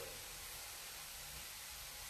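Faint, steady hiss of spinach sizzling in an electric frypan.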